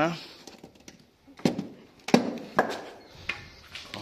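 A few sharp knocks and clanks of handled objects, about four over two seconds, the loudest a little after two seconds in, some with a short ringing tail.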